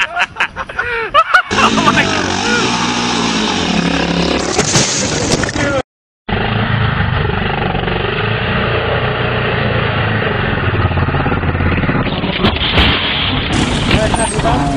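A sequence of cut-together clips: a few seconds of loud voices, a moment of dead silence, then a dirt bike's engine running steadily for most of the rest, its pitch wavering.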